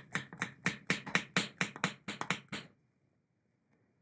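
Hand-operated vacuum pump of a Roarockit Thin Air Press being worked rapidly to draw the air out of a vacuum bag: an even train of short clicking strokes, about four to five a second, that stops about two and a half seconds in.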